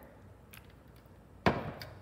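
A single sharp knock about one and a half seconds in: a clear pitcher set down hard on the tabletop, with a short ringing tail.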